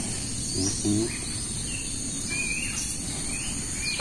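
Rural outdoor ambience: a steady high-pitched insect drone with several short bird chirps, and a brief murmured word just before a second in.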